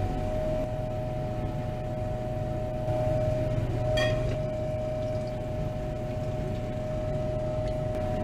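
Steady machine hum with a constant tone, running without change, and one brief ringing clink about halfway through.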